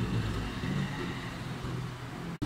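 A steady low background rumble with no distinct event standing out.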